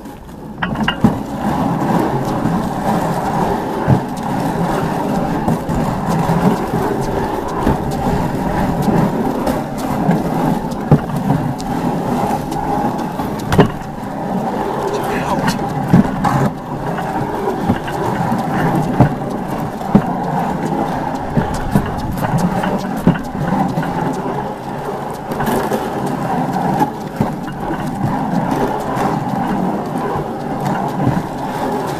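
Weighted sled dragged across a concrete driveway: a steady, loud scraping rumble that starts about half a second in, broken by frequent short knocks and clatters as it jolts along.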